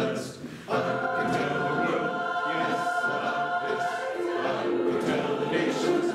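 A choir singing held chords. The sound dips briefly at the start, the voices come in together less than a second in, and the chord changes about four seconds in.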